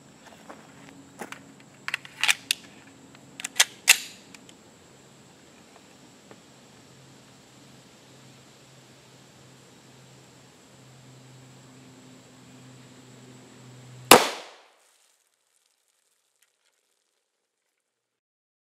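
A single pistol shot from an FN Five-seveN firing a 5.7x28mm round, sharp and loud, about fourteen seconds in. It is preceded by a few small sharp clicks of gun handling.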